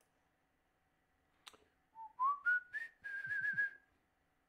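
A man whistling a short tune: four quick notes stepping upward, then a held, wavering high note. A single sharp click comes just before the whistling.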